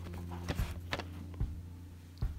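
Background music with a steady beat: held low bass notes that change pitch in steps, with a sharp percussive click about twice a second.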